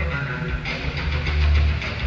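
Live rock band playing a slow instrumental: electric guitar over held low bass notes and drums.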